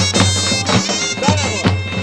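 Folk music on a reedy wind instrument: a fast, ornamented melody over a steady low drone, with regular sharp beats several times a second.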